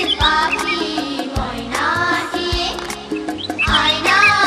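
Background music with a steady beat and a melodic line, with high bird chirps mixed in near the start and again near the end.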